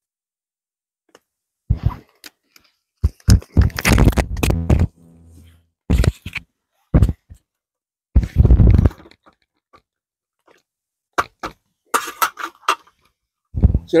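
A metal spoon stirring tea in a cardboard Pringles tube, with the tube being handled: a series of short knocks and scrapes separated by silent gaps.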